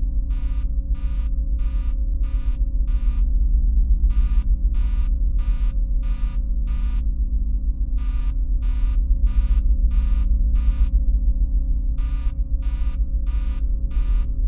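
Spaceship console warning alarm: electronic beeps repeating about two a second in runs of six, with a short pause between runs, over a steady low hum.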